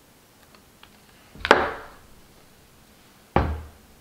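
Two dull knocks on a wooden tabletop, about two seconds apart, as a hot glue gun is set down and a cardstock papercraft wheel is handled, with a few light ticks before them.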